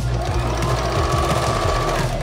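Husqvarna Viking electric sewing machine running in one steady stitching burst of about two seconds, over background music.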